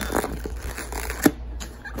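Rustling handling noise with a sharp knock a little over a second in.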